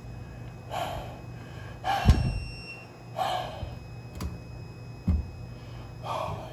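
A person's breathy exhalations, three of them about a second apart, with a thud about two seconds in and a lighter one near the end as a plastic toy figure is handled on a tabletop. A steady low hum runs underneath.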